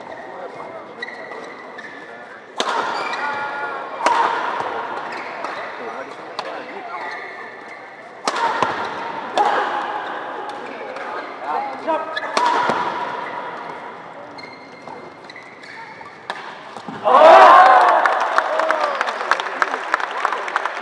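Badminton rally: sharp smacks of rackets on the shuttlecock, with shoe squeaks on the court floor and a murmuring crowd. About 17 seconds in, the crowd bursts into loud shouts and cheers, then applauds as the point ends.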